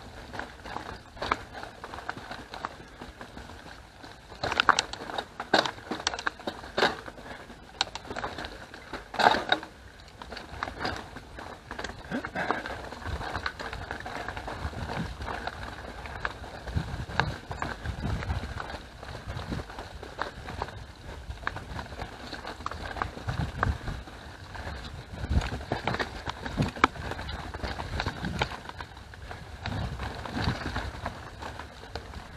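Mountain bike rolling over a dirt and leaf-litter forest trail: tyre noise on the ground with frequent sharp rattles and knocks from the bike over bumps, thickest in the first ten seconds. Low rumbling gusts come in the second half.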